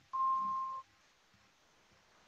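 A single steady high tone, under a second long, that starts and stops abruptly, followed by near silence.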